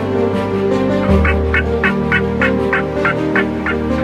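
Wild turkey calling: a run of about nine short, evenly spaced notes, roughly three a second, starting about a second in, over steady background music.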